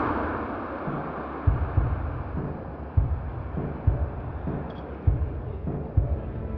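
Footsteps thudding at a walking pace, about one every half second or so, as a camera is carried along. A rush of background noise fades away in the first second.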